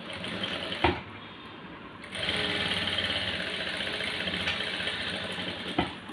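Sewing machine stitching in one steady run of about four seconds, starting about two seconds in. A sharp click comes just under a second in and another just before the run ends.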